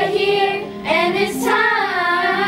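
A group of young girls singing a pop song together over a recorded backing track, holding long sung notes.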